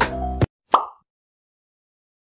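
Background music stops abruptly. A moment later comes a single short cartoon 'plop' sound effect, a quick bloop that glides in pitch, and then total silence.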